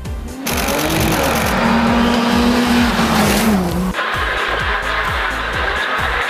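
Ford Fiesta R2 rally car engine passing at steady revs, with noise from the tyres on gravel. The revs fall away about three and a half seconds in. An electronic dance beat plays underneath throughout.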